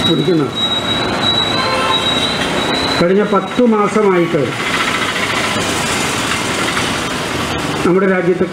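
A rushing noise of passing road traffic fills the second half, following a steady high whine in the first few seconds. A man's voice comes through in two short snatches, at the start and about three seconds in.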